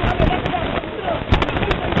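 Several people shouting at once at close range during a scuffle, with many sharp knocks and crackles mixed in and one loud knock past the middle.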